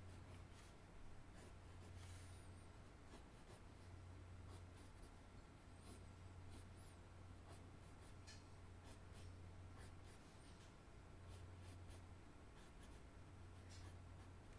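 Graphite pencil sketching on paper: faint, short, irregular scratching strokes, over a low steady hum.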